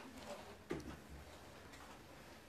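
A quiet pause in a small room, with a faint click at the start and a short click-like mouth or handling sound just under a second in.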